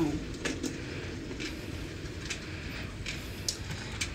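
A motorized curtain closing on its own along its ceiling track: a low steady hum with a few faint clicks.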